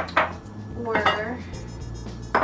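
Glasses being moved and set down on a ceramic tile countertop: two sharp knocks right at the start and another clink about a second in.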